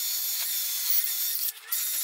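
Cordless angle grinder with a wire wheel whirring and scratching against the metal of a golf cart's rear-end housing, wire-brushing dirt off it. It drops out briefly about one and a half seconds in, then picks up again.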